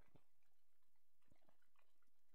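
Near silence, with faint scattered clicks and crackles.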